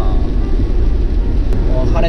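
Steady low rumble of a car driving on a wet road, heard from inside the cabin, with a single short click about one and a half seconds in.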